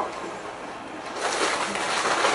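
Rustling and handling noise as bags and their contents are rummaged through, louder in the second half.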